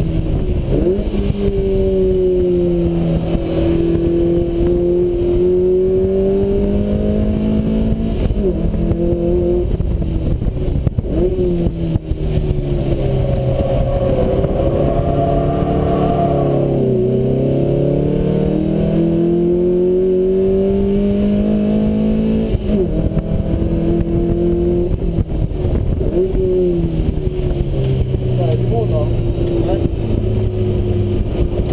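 Lotus Elise S1's mid-mounted Rover K-series four-cylinder heard from inside the open cockpit, pulling hard through the gears with sharp pitch drops at each upshift. Around halfway the engine note falls in a long slide under braking and downshifts, then climbs through the gears again and settles lower near the end. Wind rushes over the open cockpit throughout.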